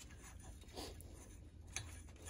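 Faint handling noises from a valve spring compressor being fitted to a cylinder head: light clicks and rustles of gloved hands on the tool, with a sharper tick near the end.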